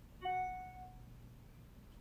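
A single short chime: one clear pitched note with bright overtones sounds about a quarter second in and fades away within about half a second, over a faint background.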